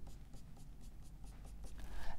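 Whiteboard marker drawing a rapid run of short strokes on the board, a quick series of light scratchy ticks.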